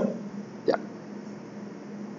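A man's voice saying a single short "ya" under a second in, otherwise quiet room noise with a faint steady hum.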